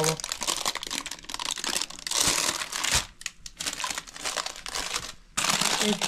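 Baking paper crinkling and rustling as it is pulled and peeled back from around a baked pie, in uneven spells with brief lulls around the middle and near the end.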